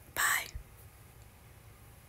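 A single short whispered sound from a person about a quarter second in, with no voiced pitch. After it there is only faint, steady background noise.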